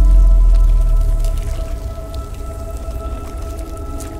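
Ambient sound-design score: a deep sub-bass boom fades out over the first second or so, beneath steady held drone tones, with a few faint drip-like clicks.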